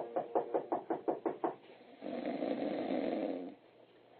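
Rapid knocking on a door, about a dozen quick knocks over the first second and a half, followed by a long snore from someone asleep inside.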